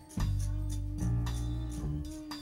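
Jazz ballad played live: a hollow-body electric bass sounds two long low notes about a second apart, under a steady held tone and light percussion taps.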